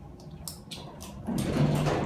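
OTIS hydraulic elevator car arriving at a floor: a few faint clicks, then about a second and a half in, a steady low hum with a rush of noise as the doors begin to open.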